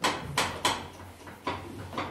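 A few sharp clicks and knocks from a newly assembled office chair as the sitter works the height-adjustment lever under the seat, irregularly spaced over about two seconds.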